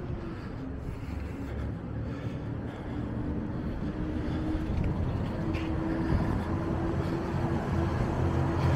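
Street traffic: the low rumble of a motor vehicle's engine, growing slowly louder, with a steady low drone through the middle.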